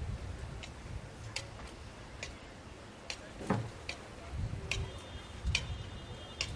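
Faint, regular high-pitched ticks, about one every 0.8 seconds, over a low background rumble, with one brief louder sound about three and a half seconds in.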